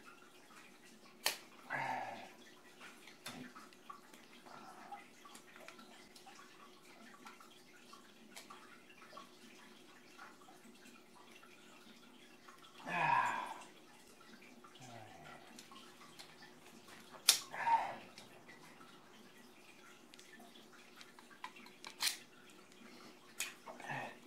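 Hand tools being handled on a tile floor: a few sharp, separate clicks and taps over a faint steady hum, with short soft vocal sounds from the worker, the loudest about 13 seconds in.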